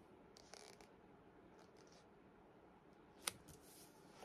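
Faint rustling of a paperback book being handled and opened, its paper covers and pages brushing, with one sharp click a little over three seconds in.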